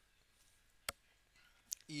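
A single sharp computer-mouse click about a second in, over quiet room tone.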